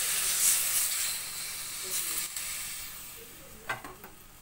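Water poured into a hot steel kadai of frying crab masala: a loud sizzle and hiss of steam that dies away over about three seconds. A short knock comes near the end.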